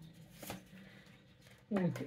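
Fortune-telling cards handled in the hands: a faint rustle and one short sharp flick of a card against the deck about half a second in.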